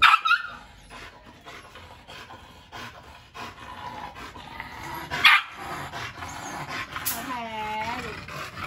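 A dog yelping and barking: a sharp, high-pitched yelp right at the start and another about five seconds in, with quieter dog noises between.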